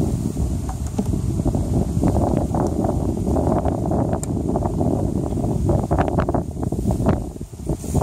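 Wind buffeting the microphone, over repeated clicks, knocks and scrapes of a metal hive tool prying a wooden frame loose from a beehive box and lifting it out.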